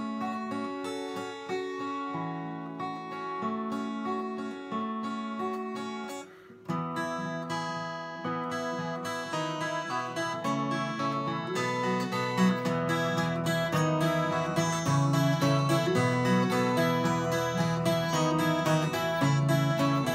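Twelve-string acoustic guitar fingerpicked in a straightforward up-and-down pattern: the index, middle and ring fingers pick the third, second and first strings in turn over held chords. There is a brief break about six seconds in, after which the picking carries on fuller and a little louder.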